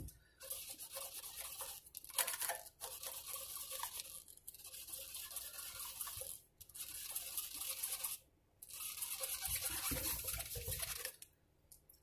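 Cloth rag rubbing back and forth over a mandolin's frets and fretboard, wiping out the sanding dust left from fret levelling and crowning, in long scrubbing passes with a few short pauses.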